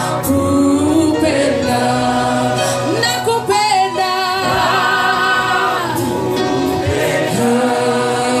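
A choir singing a gospel song, with several voices holding and sliding between sustained notes.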